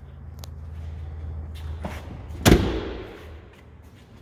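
The driver's door of a 2008 GMC Sierra 3500HD regular cab being shut from outside, one loud slam about two and a half seconds in that echoes briefly, after a few light clicks as the cab is left.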